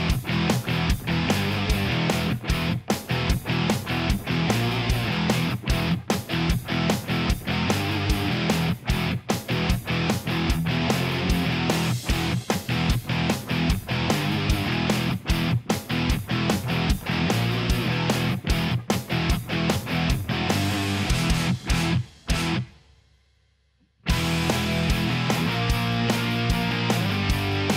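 Rock background music with electric guitar and a steady beat. About twenty-two seconds in it fades out, is nearly silent for a second or so, then starts again.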